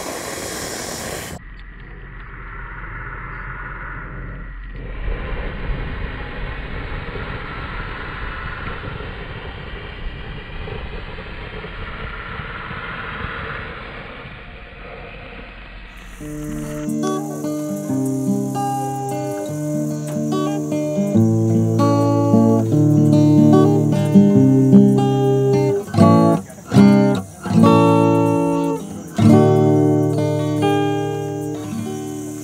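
A steady hiss over a small smouldering twig fire for roughly the first half, then acoustic guitar music, picked notes and chords, starting about halfway through and getting louder.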